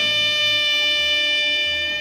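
A saxophone holding one long, steady note, with a low accompaniment underneath that moves to a new note near the end.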